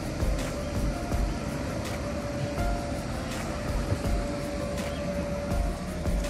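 An inflatable bounce house's electric blower fan running with a steady whir, under background music.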